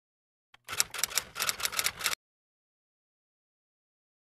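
Typewriter key-clicking sound effect: a rapid run of sharp clicks lasting about a second and a half.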